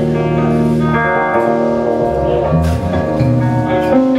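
Live band playing: electric guitar over long held keyboard chords, with low notes that change about halfway through and a few light drum or cymbal hits.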